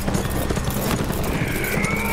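A horse galloping, its hooves striking in a quick run over a low steady rumble. A long, high cry rises and falls near the end.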